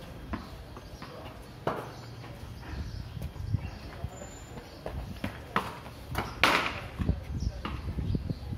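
Irregular sharp knocks of a cricket ball and bat on a tiled courtyard floor, a second or two apart; the loudest and longest comes about six and a half seconds in.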